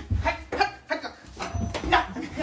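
Several short cries in quick succession during a scuffle on a bed, with low thumps.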